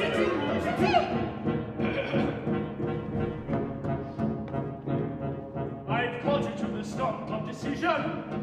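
A small live ensemble of clarinet, saxophone and drum kit plays stage music, with frequent short drum and percussion hits. Brief sliding pitch glides come about a second in and again near the end.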